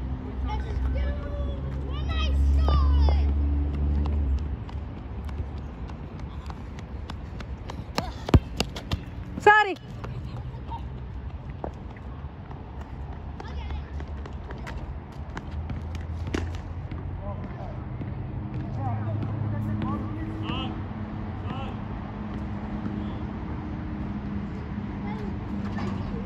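Outdoor ambience of distant voices, mostly children at play, over a low rumble. A quick cluster of sharp knocks comes about a third of the way in, followed by a short falling cry.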